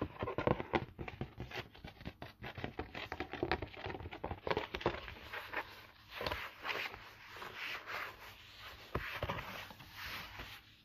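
A stiff cardboard sheet from a calendar's packaging being handled, flexed and turned over by hand: a dense run of taps, scrapes and crinkles.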